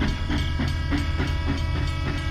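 Toy train running on plastic track, with a regular chugging at about three chuffs a second over a steady hum.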